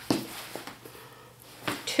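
Faint rustling of cotton and denim fabric pieces being handled, with a brief louder sound just before the end.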